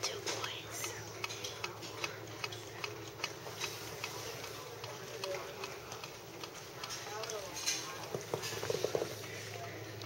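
Faint, indistinct voices in the background under frequent light clicks and taps: handling noise from a phone held against a window pane.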